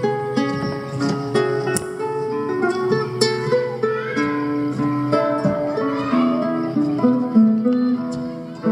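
Two acoustic guitars playing an instrumental duet: a plucked melody over picked chords and bass notes.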